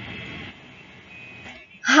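Steady low background noise with a faint high hum, as room sound comes back in after silence; a woman's voice begins near the end.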